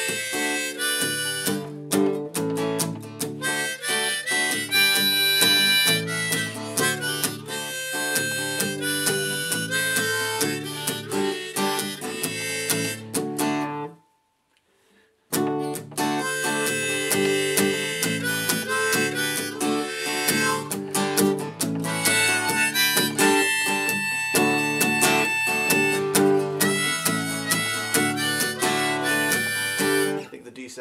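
Acoustic guitar strummed with a harmonica played in a neck rack, a harmonica in G chosen for the tune. The playing stops for about a second midway, then starts again.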